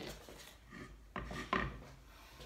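A steel frying pan scraping on a glass-ceramic hob as it is shifted, in a few short rasps about a second apart.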